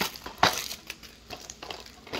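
Plastic shrink-wrap being torn and peeled off a new DVD case, crinkling with irregular sharp crackles, loudest at the start and about half a second in.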